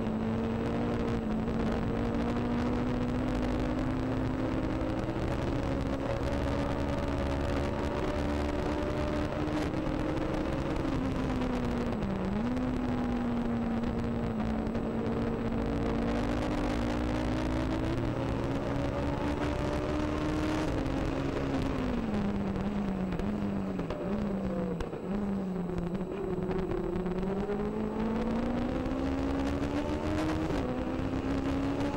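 Legend race car's Yamaha four-cylinder motorcycle engine heard from on board, running hard at high revs with a brief lift about twelve seconds in. Later the revs drop in several steps as the car slows and shifts down, then climb again near the end as it accelerates.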